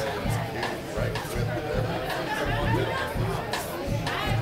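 Indie rock band playing live in a club, the drums and bass keeping a steady beat with cymbal strokes. Audience chatter sits close over the music.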